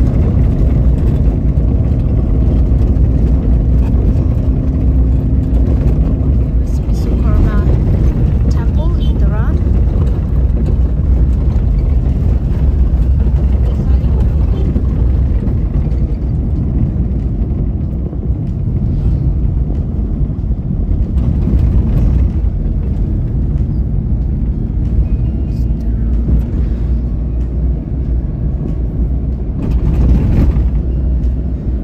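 Steady low rumble of a car driving along a road, heard from inside the cabin: engine and tyre noise with no clear change in speed.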